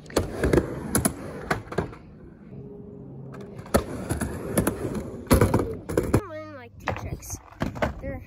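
Skateboard rolling on a backyard halfpipe ramp, with many sharp knocks and clacks as the board works up and down the ramp. A short vocal sound, falling in pitch, comes near the end.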